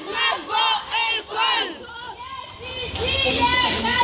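Crowd of women and girls chanting protest slogans in Arabic in unison, with shouted syllables about twice a second. After a short dip, a more drawn-out chant starts up about three seconds in.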